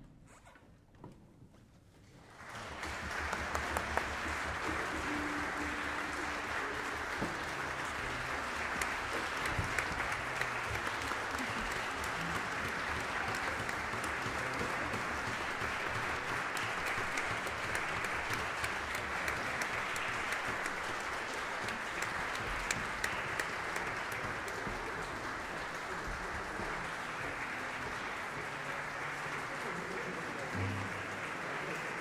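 Audience applauding. It breaks out after about two seconds of near silence and then keeps up steadily.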